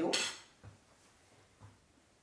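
Two faint low knocks about a second apart as a small glass honey jar and its lid are handled on a kitchen counter, with near quiet between them.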